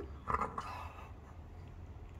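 A woman's short groan of frustration, muffled by her hands over her face, tailing off within about a second.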